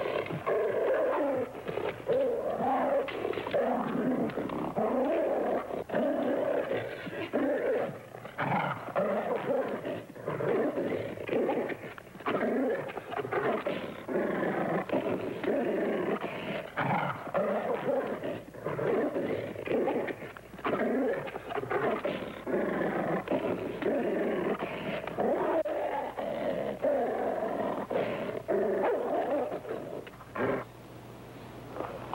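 Two grizzly bears fighting, growling continuously in rough, uneven bursts.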